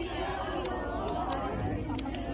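Women's voices chattering over Bathukamma circle-dance handclaps, a light clap about every two-thirds of a second keeping the dance beat.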